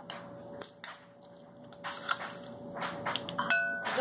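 Light clicks and clinks of a ring of measuring spoons and small spice containers being handled, with one short, bright ding near the end.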